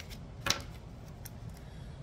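Tarot cards being handled over a table, with one sharp click about half a second in and faint small ticks otherwise.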